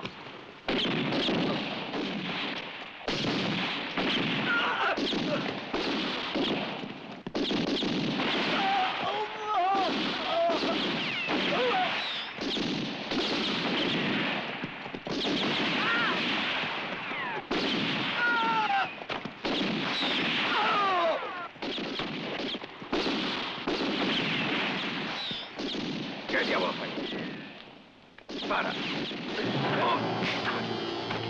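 Near-continuous gunfire from many rifles and revolvers as a film sound effect, volley after volley, with men crying out and screaming over it. The firing drops away briefly near the end.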